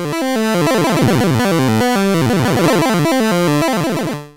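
Ableton Drift synth played through a chiptune arpeggiator device: a held minor-ninth chord stepping quickly note by note in a chiptune style. The arpeggio rate changes as it plays, from a blur of very fast falling runs at first to slower, distinct steps.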